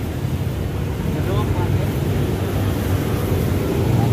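Steady low rumble of road traffic on a busy city street, with a faint voice briefly about a second in.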